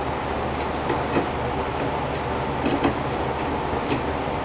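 A few light clicks and taps as glass tubes are handled in a fluorescent lamp fixture, over a steady low hum.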